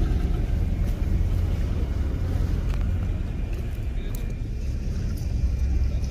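A motor engine runs with a steady low rumble.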